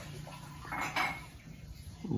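Pencil lead scratching on paper as one short curved stroke is drawn, a brief scratchy sound about a second in that ends in a small tick.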